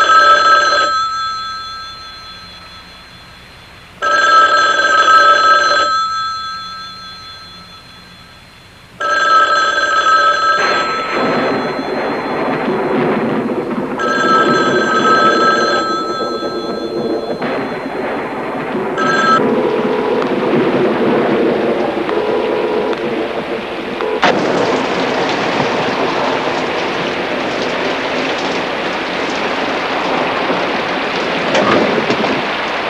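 A landline telephone's bell ringing unanswered, about two seconds of ringing every five seconds: four rings, with a fifth cut short. Steady rain then falls.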